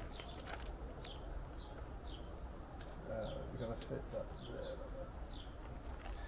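Garden birdsong: short high chirps repeating about every half second, with a few low cooing phrases in the middle, faint against a low background rumble.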